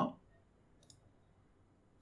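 A single short computer mouse click about a second in, against a faint hum of room tone.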